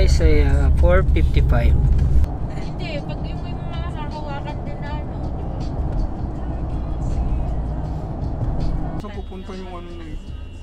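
Low, steady road and engine rumble inside a moving car's cabin, heard under voices and background music. The level drops a little after about two seconds.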